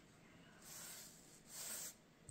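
Small foam paint roller rolled over a plywood board, smoothing out a fresh coat of white paint: two faint strokes, each a soft hiss, the second near the end.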